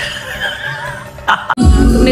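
Audio of an inserted meme clip: a high, wavering cry, then loud music with a heavy bass beat cutting in suddenly about one and a half seconds in.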